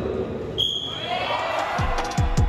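Electronic swim-race start signal: a single short high beep about half a second in, ringing on in a reverberant indoor pool hall. Low thumping beats begin near the end.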